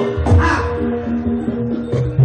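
Javanese jaranan ensemble music: steady held tones over heavy drum beats, with a short harsh cry that rises and falls about half a second in.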